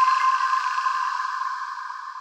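The tail of an electronic logo-sting jingle: a sustained high synth tone with a hiss above it, fading out steadily after the beat has stopped.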